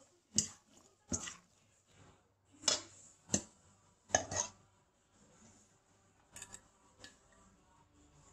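Metal fork and ladle knocking against a stainless steel mixing bowl while spaghetti carbonara is tossed and lifted out: about a dozen sharp clinks, roughly one a second, fewer and fainter in the last few seconds.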